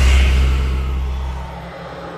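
A deep rumbling boom, a dramatic sound-design hit, loudest at the start and fading away over about a second and a half, with a hissy wash above it.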